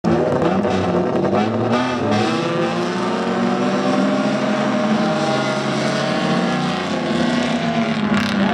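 A pack of dirt-track sedan race cars with their engines all running together, several engine notes overlapping and climbing in pitch about two seconds in as the field accelerates.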